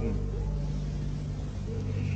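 Steady low hum with a background hiss from the speech recording, heard in a pause between sentences.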